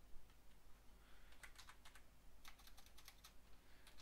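Faint typing on a computer keyboard: two short runs of keystrokes, about one and a half and two and a half seconds in.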